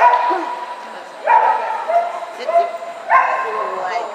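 A dog barking three times, about a second and a half apart, while running an agility course.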